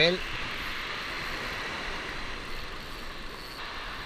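Steady, even hiss of surf washing up on a sandy beach.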